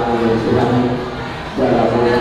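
Men's voices singing together in long held notes, led by one man singing into a microphone. The singing drops off about a second in and comes back strongly about a second and a half in.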